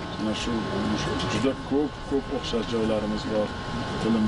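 Speech: a person talking in conversation, over outdoor background noise and a faint steady tone.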